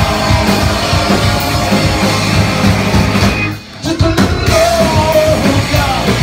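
Punk rock band playing live at full volume: electric guitars, bass and drums with shouted vocals. The band breaks off briefly about three and a half seconds in, then crashes back in.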